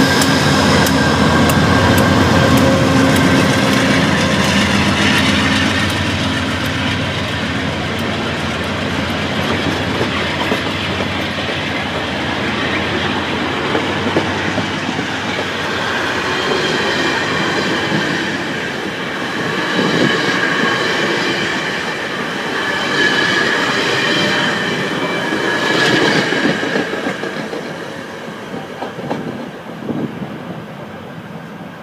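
VIA Rail P42DC-hauled passenger train passing. The locomotive's diesel engine is heard first, with regular wheel clicks. Then the coaches roll by with high ringing tones from the wheels in the second half, and the sound fades as the train moves away near the end.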